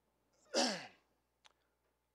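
A man's single short breathy vocal exhale, falling in pitch, about half a second in, of the throat-clearing or sighing kind, followed by a faint click a moment later.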